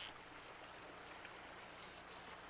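Faint, steady rush of flowing stream water, with a faint low hum underneath.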